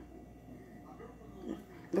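Faint, low murmuring from a woman's voice, then she starts speaking clearly near the end.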